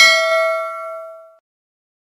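Notification-bell 'ding' sound effect of a subscribe-button animation: one bright chime that rings on and fades out about a second and a half in.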